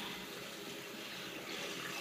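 Tap water running steadily while a washcloth is rinsed under it.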